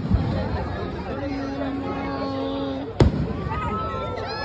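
Fireworks bursting: a sharp bang right at the start and another about three seconds in, over a crowd talking.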